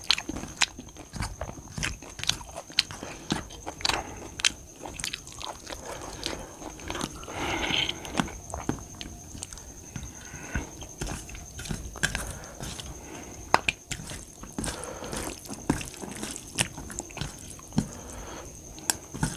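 Close-miked eating: a person chewing mouthfuls of rice and eggplant curry, with irregular smacking clicks a few times a second and a longer noisy swell about halfway through.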